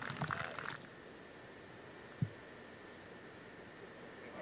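Quiet outdoor ambience after brief voices at the start, with a faint steady high hum and a single soft low thump about two seconds in.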